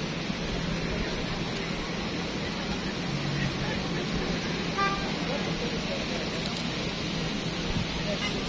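Busy city-square street ambience: steady traffic noise mixed with the chatter of passing pedestrians.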